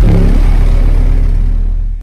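Two American Bass Elite 15-inch car subwoofers play a 35 Hz test tone (a 'burp') at full power, heard inside the vehicle. It is one very loud, steady, deep tone of about two seconds, and it registers about 135 dB on the meter.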